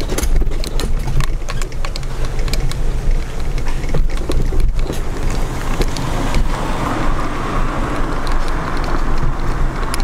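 Mobility scooter being driven along a pavement: a steady low motor hum with frequent clicks and rattles as it runs over the paving. A higher whine comes in over the last few seconds.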